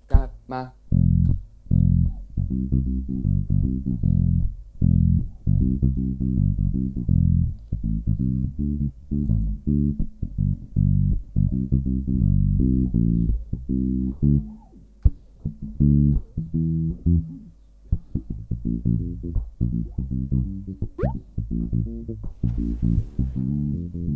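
Unaccompanied electric bass guitar playing a reggae bassline of short plucked notes in a bouncing, syncopated rhythm with brief rests. It is strung with old strings, which make its tone sound funny.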